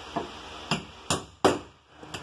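A hammer striking a nailed-up wall panel four times in quick, uneven succession, each knock sharp with a short ring after it.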